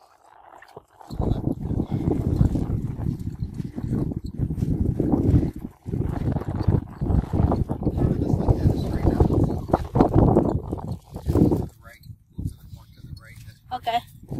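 Wind buffeting the microphone: a loud, gusty low rumble that starts about a second in and drops away near the end.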